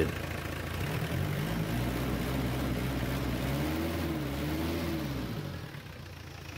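Diesel engine idling steadily, heard close up in the engine bay. Its sound drops in level about five and a half seconds in.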